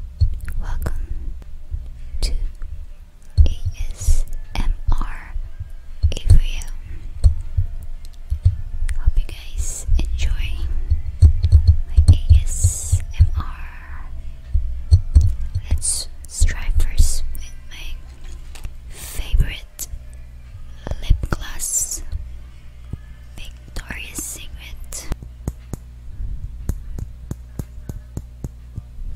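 Fingertips and nails tapping, rubbing and scratching directly on a condenser microphone's metal grille, heard very close up as many sharp clicks and low handling thuds, with short hissy scratches in between.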